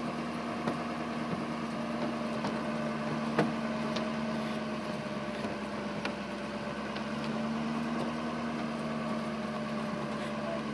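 Pickup truck engine running steadily as the truck drives along a dirt road, a constant hum with a few light knocks scattered through.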